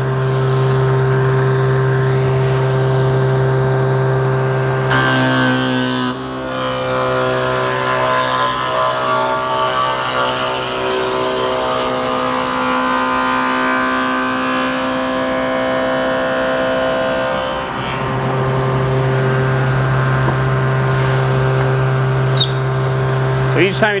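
Table saw with a stacked dado blade running, hogging a wide dado out of a reclaimed wood beam. It hums steadily at first. About five seconds in, the blade bites into the wood and the sound turns rougher for about twelve seconds, then the free-running hum returns near the end.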